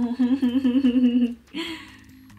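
A woman humming one held note with a fast, even wobble, about six times a second, for a second and a half. A short breathy sound follows.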